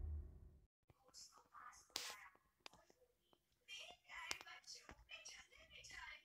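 A low sound from the intro cuts off abruptly under a second in. Then comes near silence with faint, breathy, whisper-like sounds and a few soft clicks close to the microphone.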